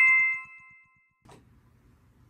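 A two-note chime sound effect, the second note lower, ringing out and dying away within the first second. A short click follows, then faint room tone.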